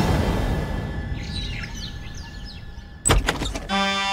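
Edited TV-drama soundtrack: a background score fades out and birds chirp about a second in. Just after three seconds comes a short burst of sharp clicks, the loudest sound, and near the end a held chord of background music begins.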